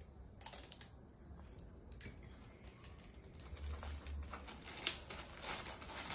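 A gift bag being folded and taped shut by hand: faint, irregular crackling and small clicks of the bag and sticky tape, with one sharper click about five seconds in.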